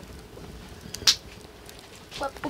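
A single sharp snap about a second in, with a fainter click just before it, over a quiet background.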